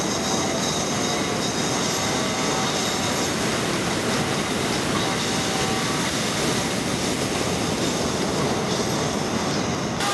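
Steady roar of ocean surf, with heavy waves breaking and white water rushing.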